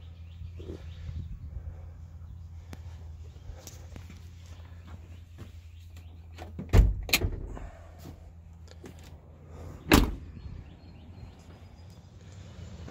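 Two heavy thumps about three seconds apart, the first followed by a few lighter knocks, over a steady low hum: the doors of a 1997 Chevrolet C1500 pickup being shut.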